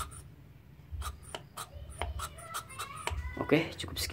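A run of light clicks and taps as a motorcycle carburetor is handled and turned over in the hands, after reassembly. Near the end a man's voice starts.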